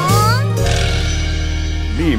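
A short rising vocal cry from a cartoon character right at the start, then background music holding one steady chord.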